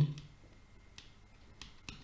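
A handful of faint, sharp clicks spread over a quiet stretch, from a stylus tapping a writing tablet while numbers are handwritten.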